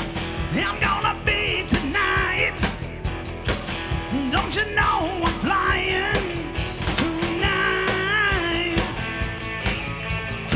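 Live rock band playing: an electric guitar lead over a drum kit, with regular drum hits and bending, sustained guitar notes.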